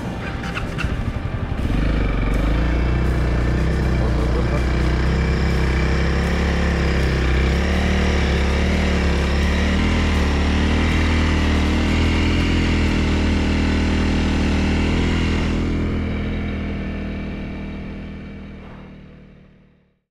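Single-cylinder Honda CRF300L dirt bike engine pulling away and running steadily across soft beach sand, its engine speed rising and falling a little. The sound fades out over the last few seconds.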